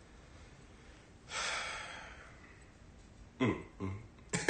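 A man's breathy hiss through the mouth, starting about a second in and fading over about a second, followed near the end by two short, low chuckles.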